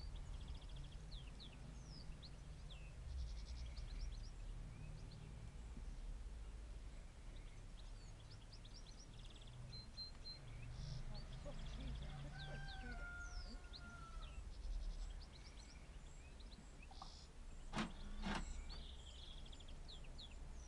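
Outdoor ambience: small birds chirping over and over above a low steady rumble, with two sharp knocks about half a second apart near the end.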